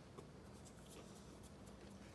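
Near silence: faint chewing and soft handling of a pita-bread wrap, heard as scattered light clicks and rustles over a low steady hum.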